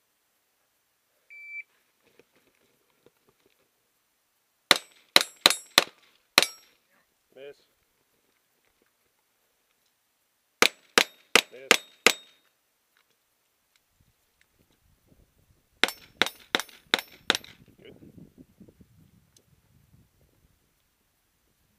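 Handgun fired in three quick strings of about five shots each, every string lasting about a second and a half, with roughly five seconds between strings.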